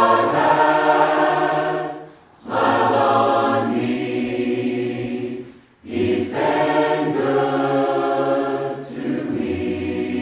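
A choir singing a hymn in long held phrases, with a short break between phrases about two seconds in and again near six seconds in.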